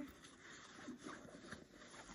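Faint handling noise of a leather diaper backpack: fingers rubbing the bag and its front zipper pocket, with a few soft ticks.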